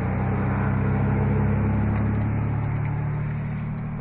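A steady low motor hum that slowly fades toward the end.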